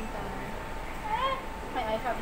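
A brief high-pitched wordless vocal sound about a second in, one tone that rises and then falls in pitch, followed near the end by shorter, lower voice-like glides, over a faint steady hum.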